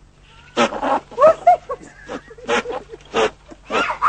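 Billy goat bleating loudly: about five short, harsh calls in a row.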